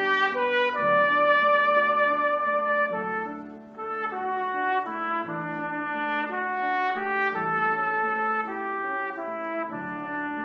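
Solo cornet playing a slow melody of held notes with piano accompaniment, with a short breath pause between phrases at about three and a half seconds.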